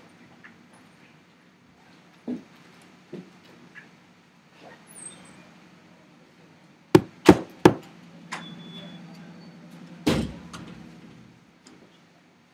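Several sharp knocks or bumps over a low steady hum: three in quick succession about seven seconds in, then a heavier one with a short ringing tail about three seconds later.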